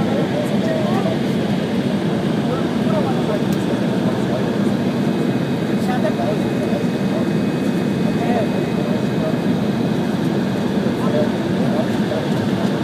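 Steady in-cabin noise of an Embraer 170 airliner in descent: its General Electric CF34-8E turbofans and the rush of airflow heard through the cabin wall, with indistinct passenger voices over it.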